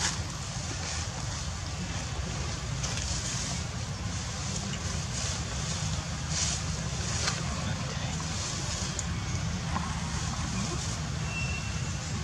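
Outdoor ambience: a steady low wind rumble on the microphone under an even hiss, with a few faint clicks.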